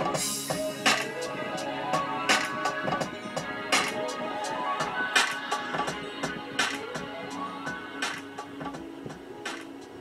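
Recorded music playing through the Nissan Murano's 11-speaker Bose surround sound system, heard in the car's cabin: a melody over a struck beat about every second and a half. It grows gradually quieter as the volume knob is turned down.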